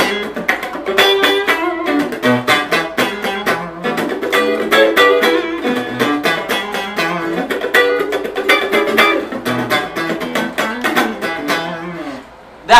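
Stratocaster-style electric guitar played continuously in a blues call-and-response passage: quick picked licks answered by chords, with many fast note attacks.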